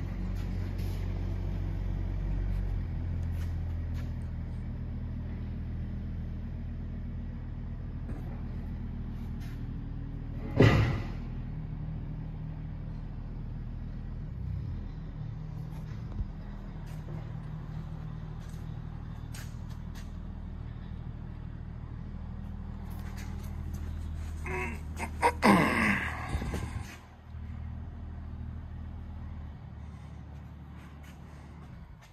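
A steady low mechanical drone, with a sharp knock about ten seconds in and a brief burst of scuffling and handling noise about three-quarters of the way through.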